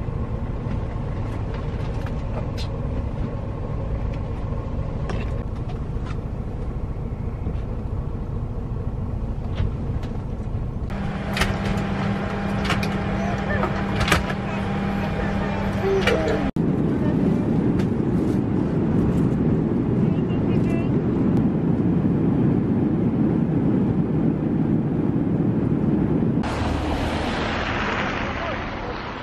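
Steady engine and road rumble heard from inside a coach bus. After about ten seconds it cuts to a different steady cabin hum with several sharp clicks, and past the middle to a louder, rushing cabin noise.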